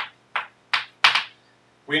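Chalk writing on a blackboard: three short, scratchy chalk strokes in quick succession, the last the longest and loudest.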